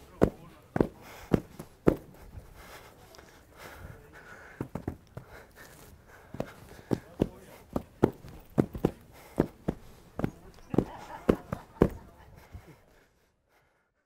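Rhythmic stamping of dancers' feet on packed ground in Rwandan traditional dance, about two stamps a second, with a sparser stretch early on. A faint voice is heard under it. The stamping stops about a second before the end.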